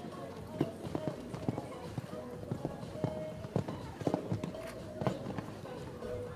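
Hooves of an Oldenburg gelding cantering on a sand show-jumping arena, a run of irregular hoofbeats, a few each second.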